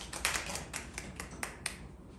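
Brief, scattered handclapping from a small audience: a dozen or so separate claps, thickest in the first second and thinning out, the last one about three-quarters of the way through.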